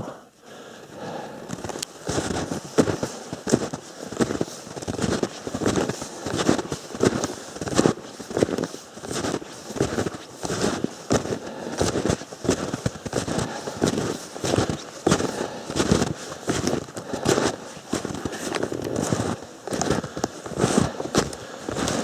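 Snowshoe footsteps crunching in deep snow in a steady walking rhythm that starts about two seconds in.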